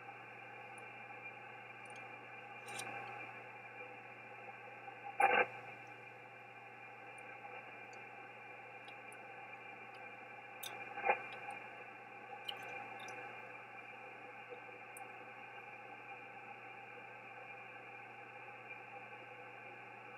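Shortwave transceiver receiving an empty upper-sideband channel on the 17 m band: steady hiss held inside the narrow voice passband, with two brief crackles about five and eleven seconds in and a few faint clicks.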